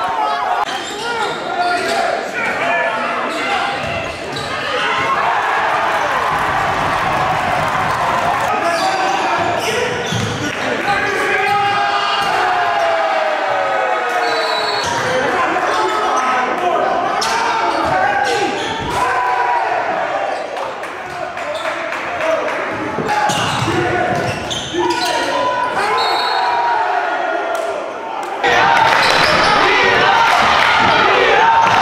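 Basketball being dribbled and bouncing on a court, with players' and spectators' voices and shouts around it, echoing in a gym for most of the clip. The sound changes abruptly a couple of times where clips are cut together.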